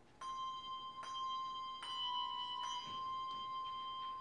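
Handbell choir beginning a piece: single handbell notes struck about once every 0.8 seconds, each ringing on under the next, starting a fraction of a second in.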